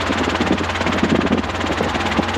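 Robinson R22 helicopter cabin noise during a descent with the collective lowered: a steady rotor and engine drone with fast, even beating, swelling into a low rumble around the middle.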